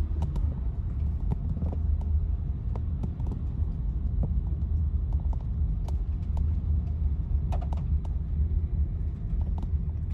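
Steady low rumble of a car's engine and road noise heard from inside the cabin while it moves, with a few faint scattered clicks.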